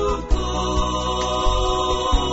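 A Swahili gospel song by a women's vocal harmony group, with held harmonised notes over a recurring bass beat.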